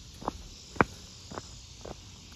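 Footsteps of a person walking at an easy pace on a concrete sidewalk, about two steps a second, the step near the middle the loudest, over a faint steady high hiss.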